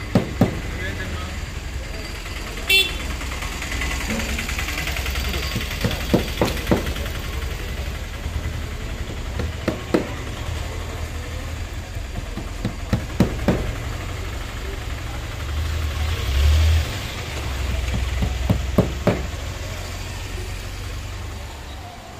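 Hammer tapping on the auto rickshaw's canopy frame while the new cover is fastened, in small clusters of sharp knocks a few seconds apart. A steady low rumble of street traffic runs underneath.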